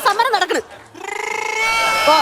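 A woman's voice on stage: a few quick spoken syllables, then one long, drawn-out high vocal note held at a steady pitch for about a second.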